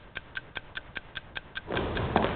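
A clock ticking quickly and evenly, a little over four ticks a second. Near the end a steady rush of background noise comes in under the ticks.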